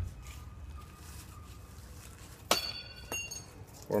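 Low rumble of wind on the microphone. About two and a half seconds in comes a sharp clink that rings briefly, followed by a second smaller tick just after.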